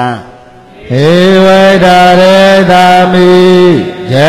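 A man's voice chanting Pali scripture in a steady monotone: after a short pause, one long phrase held on a nearly level pitch starts about a second in and falls away just before the end.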